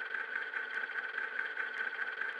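A steady, unchanging drone of several held tones, the strongest a high hum, with almost no low end.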